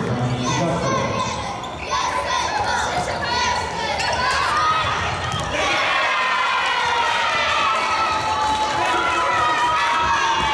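A futsal ball being kicked and bouncing on a sports-hall floor, with children's voices shouting over the play. The shouting rises into long, drawn-out calls from about halfway through.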